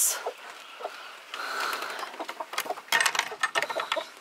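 A few soft hen clucks, then rustling. About three seconds in comes a quick run of clicks and knocks as the wooden, chicken-wire coop door is pulled shut and its metal latch is worked.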